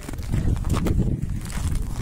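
Handling noise close to the microphone: a padded jacket sleeve rubbing over it, giving a steady low rumble with several soft knocks and rustles.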